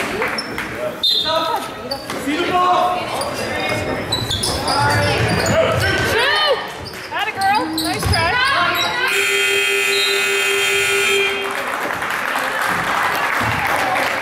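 Gym scoreboard buzzer sounding one steady tone for about two seconds, starting about nine seconds in. Before it, a basketball bounces on the hardwood court among short squeaks and crowd voices.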